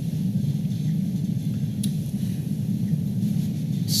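A steady low rumble of background room noise in a pause between words, with a faint click a little under two seconds in.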